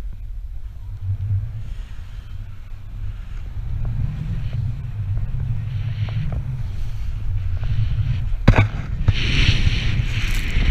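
Wind buffeting an action camera's microphone as a snowboard rides through powder, with the hiss of the board and spraying snow growing louder near the end. A single sharp knock comes about eight and a half seconds in.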